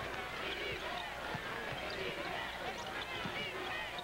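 A basketball dribbled on a hardwood court, a few separate bounces, over the steady noise of an arena crowd.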